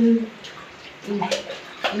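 Bath water splashing and dripping in a small tiled bathroom as a toddler is washed with water dipped from a bucket, with a few sharp splashes in the second half.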